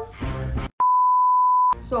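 Censor bleep: a single steady, pure electronic beep lasting about a second, starting just under a second in and cutting off abruptly, laid over a dropout in the talk.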